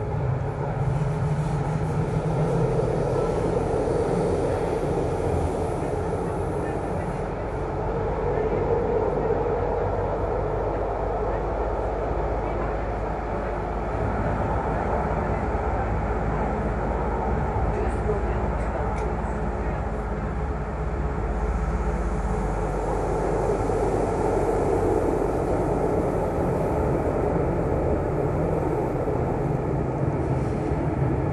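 Light-rail (Stadtbahn) car running through a tunnel, heard from inside the car: a steady rumble of wheels on rail and running gear that swells and eases a few times.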